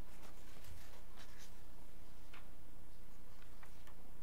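Quiet meeting-room tone with a steady low hum and a few faint, scattered rustles and clicks of papers being handled.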